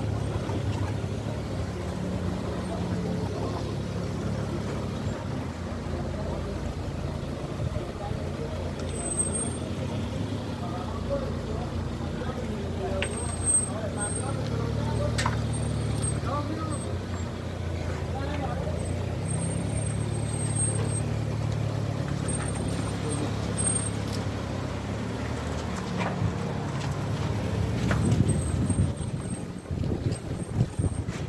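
Car engine idling and creeping along in slow traffic, a steady low hum heard from inside the cabin, with faint voices in the background.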